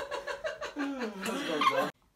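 A person's voice making drawn-out, wavering sounds that glide up and down in pitch, cut off suddenly near the end.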